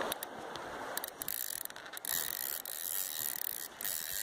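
Fixed-spool spinning reel working, a fast run of mechanical clicking and gear noise, over the rush of river water.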